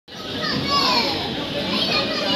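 Overlapping voices of children and other people calling and chattering, high-pitched, over a steady noisy background.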